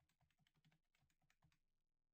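Faint typing on a computer keyboard: a quick run of keystrokes that stops shortly before the end.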